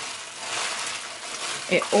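Plastic food bag rustling and crinkling as a bagged hand squishes and turns seasoned raw meat chunks around a stainless steel bowl. The sound is a continuous scratchy rustle.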